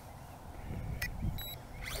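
Toy quadcopter transmitter giving a short, high beep about one and a half seconds in as it binds to the quad, after a small click about a second in. Wind rumbles on the microphone throughout.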